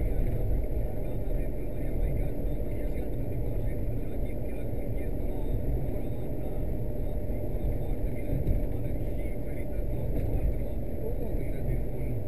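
Steady engine and tyre noise of a car driving, heard from inside its cabin.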